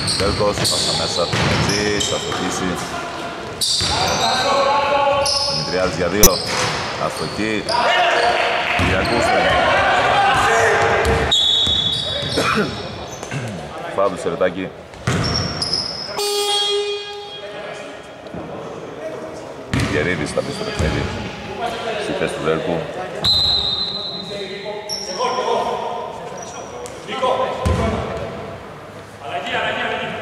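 A basketball bouncing on a hardwood court during play, echoing in a large hall, with voices calling out. There is one sharp knock about six seconds in.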